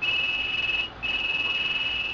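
Telephone ringing: a steady high electronic tone, broken by a short gap about a second in.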